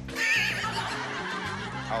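A horse whinny sound effect lasting about half a second, over a short music cue.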